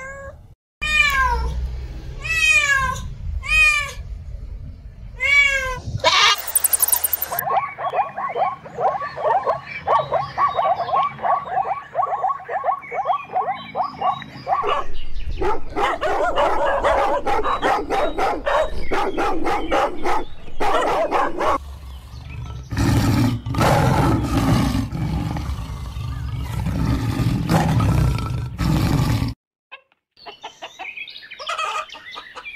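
A cat meowing about four times, each meow falling in pitch, followed by a long run of quick, short repeated cries. From about halfway through, a dog barking repeatedly, lower and heavier near the end.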